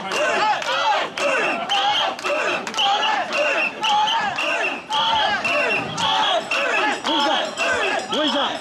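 Mikoshi bearers shouting a rhythmic carrying chant in chorus, with a pea whistle blown in short blasts about twice a second to keep the beat. Sharp clicks run through the rhythm.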